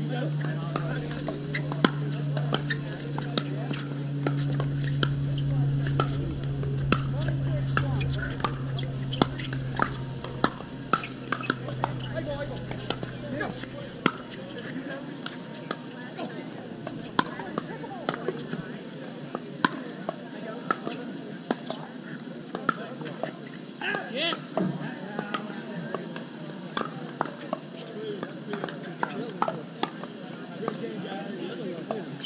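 Pickleball paddles striking a plastic ball in a rally: sharp pops at irregular intervals, some of them fainter, from play on nearby courts. A steady low hum runs under the first half and then fades out.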